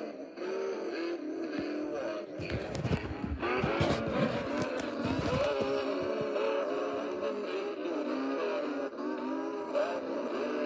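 An animated cowboy Santa figure plays a song through its small speaker while it dances, running on low batteries. A burst of rustling, knocking handling noise cuts across it from about two and a half to five and a half seconds in.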